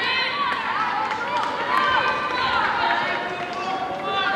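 Several high-pitched voices shouting and calling over one another.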